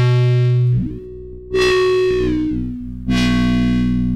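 Heavily distorted foghorn-style synth bass from the Vital software synth, with frequency modulation from its second oscillator applied. One held note is already sounding, and two more follow about a second and a half apart; each starts bright and buzzy and fades over a low bass tone that holds underneath.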